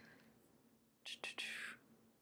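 A woman's brief soft whisper, just after two small clicks about a second in, over a faint steady low hum.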